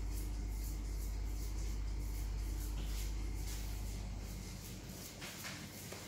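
Quiet, soft handling sounds of hands pressing and moulding minced meat onto a sheet of puff pastry, over a low steady hum that fades about four and a half seconds in.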